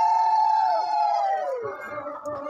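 Conch shells (shankha) blown in long held notes at two slightly different pitches, each sliding down and dying away in the second half, as the puja begins.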